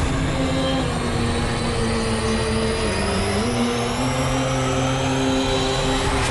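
Cinematic trailer sound design: a loud, steady rumble under sustained low drone notes that shift in pitch, with a high tone slowly rising throughout.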